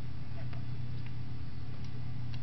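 Steady low electrical hum and hiss from an open microphone, with a few faint soft ticks.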